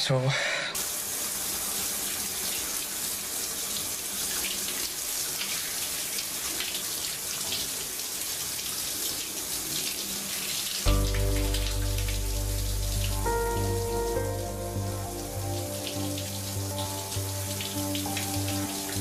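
A shower running, a steady spray of water. About eleven seconds in, background music with a low bass and held notes comes in over the water.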